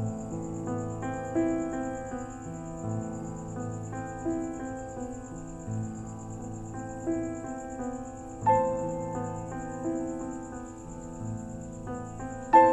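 Crickets trilling steadily in a high, fast pulse over soft, slow background music of keyboard notes struck about every second and a half, with a fuller chord about eight and a half seconds in.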